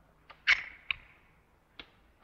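A few sharp clicks, the loudest about half a second in with a brief ringing tail, then two more, the last near the end.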